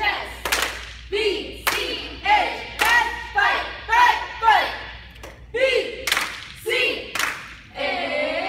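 A group of girls chanting a cheer in unison, punctuated by sharp claps and stomps about twice a second in a steady rhythm.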